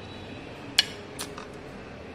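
Kitchenware clinking as idli batter is ladled into a small glass cup: one sharp knock of the metal ladle against glass or the bowl a little before the middle, then two lighter taps.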